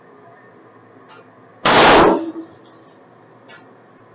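A single pistol shot from a SIG P226 Elite chambered in .40 S&W, firing a 180-grain Federal HST round, about a second and a half in, with a short ring-out after it.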